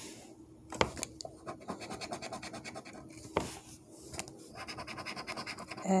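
A coin scraping the latex coating off a scratch-off lottery ticket in rapid, rhythmic strokes, with two sharper clicks about a second in and a little past three seconds.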